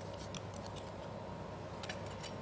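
A few faint clicks and taps of cutlery and tableware at a meal table, over a low steady hum.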